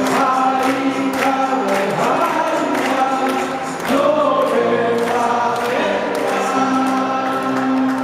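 Live music from an orchestra with violins, with many voices singing together over a steady beat.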